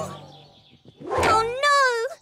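A high-pitched cartoon character's voice making a drawn-out, wordless sound that starts about a second in after a brief lull.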